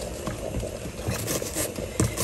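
Steady low background noise with a few faint light knocks as a halved red onion is handled on a wooden cutting board.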